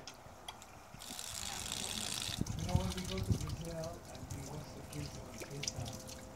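Tiered garden fountain trickling and dripping, with a short hiss about a second in.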